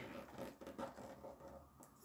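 Faint rustling and light scratching of hands and a tape measure against the plastic film over a diamond painting canvas.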